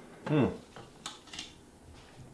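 A man's short "hmm", then a few light clicks and taps from handling a clear plastic box and its lid.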